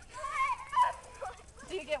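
Children's high-pitched excited shouts and squeals, loudest about half a second to a second in, with another cry near the end.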